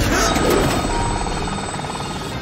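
Cartoon helicopter-rotor sound effect: a fast, fluttering whir that starts suddenly and slowly fades as the rotor lifts off, with background music underneath.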